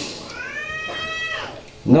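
A single high-pitched cry, rising and then falling in pitch over about a second, heard in a pause between spoken phrases.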